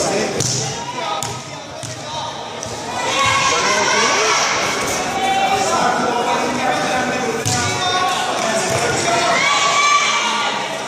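Voices of several people talking and calling out in a large, echoing sports hall, with a few dull thuds on the mats as two aikidoka grapple.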